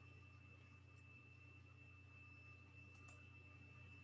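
Near silence: a faint steady high tone over a low hum, with a couple of faint ticks.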